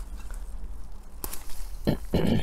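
Kale leaves rustling and brushing as a hand parts them, over a low steady rumble, with a sharp click a little over a second in and a cough near the end.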